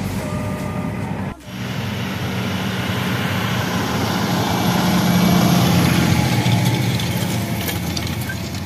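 Claas Axion tractor's diesel engine running steadily under load while pulling a disc harrow through tilled soil. The sound drops out briefly about a second and a half in, then swells louder around the middle as the tractor and harrow come close.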